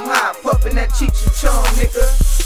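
Hip hop track: a heavy bass beat with regular drum hits and a rapping voice over it.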